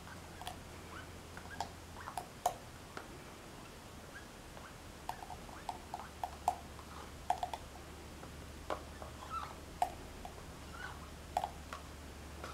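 Faint, irregular small clicks and short squeaks from a spoon scooping ice cream into a mixer jar.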